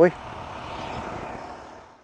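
Steady outdoor street background noise, a faint wash of traffic, that fades out towards the end.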